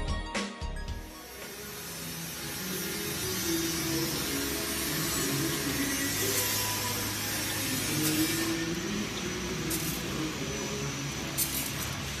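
Automatic vertical bag packing machine running, with a steady mechanical hum and hiss. From about two-thirds of the way in, a short sharp burst comes roughly every second and a half, in time with the machine's bagging cycle. Music is heard briefly at the very start.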